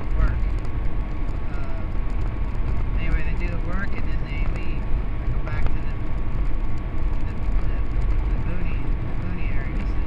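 Steady low road and engine noise inside the cabin of a moving vehicle, with a thin steady whine above it and faint voices now and then.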